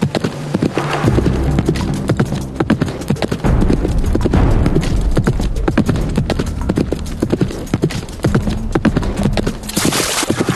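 A horse galloping hard, its hoofbeats coming fast and close, over a low steady rumble. Just before the end, a short splash of hooves through a muddy puddle.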